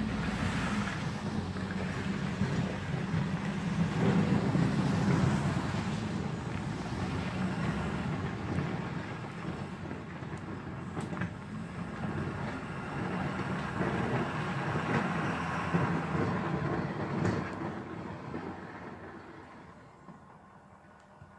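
Ford F-250 diesel pickup truck's engine running as the truck drives away down the driveway, the sound fading over the last few seconds. Two brief knocks come through, about halfway and near the end.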